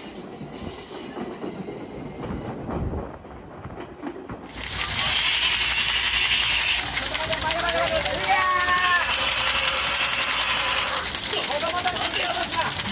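Loud, rapid rattling noise inside a moving railcar. It starts suddenly about four and a half seconds in, with a shrill hiss in two stretches and voices crying out over it. Before it there is quieter, low rumbling.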